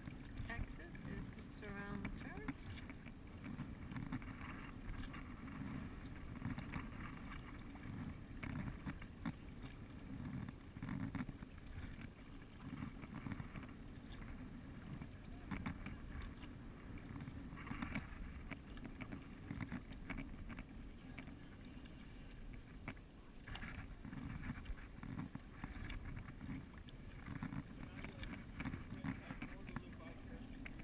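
Kayak being paddled on a calm river: a steady, muffled low rush of water and wind on the boat-mounted camera, with the paddle blades splashing in now and then.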